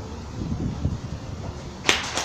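Low hall ambience with a faint murmur, then one short, sharp burst of hissy noise just before the end.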